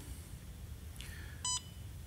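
One short electronic beep from a Siemens touchscreen control panel as a button on the screen is tapped, about one and a half seconds in, over a low steady hum.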